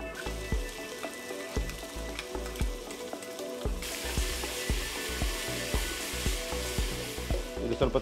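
Green herb paste and tomato masala sizzling in hot oil in an aluminium pressure cooker as it is stirred; the sizzle grows much louder about four seconds in.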